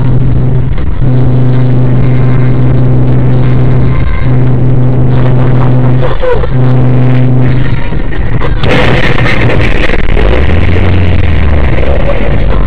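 Train horn blowing four blasts, the middle two long, then from about nine seconds in a sudden loud crash followed by continuing heavy noise as the car meets the train at the crossing.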